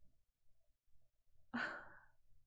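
Near silence, then about one and a half seconds in a woman gives a short breathy laugh as she says "I know".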